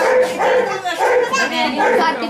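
Women's voices singing loudly in a wedding folk song, with short held high notes.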